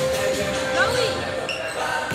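Volleyballs being hit and bouncing on a hardwood gym floor during warm-up, echoing in the gymnasium, with voices and music in the hall.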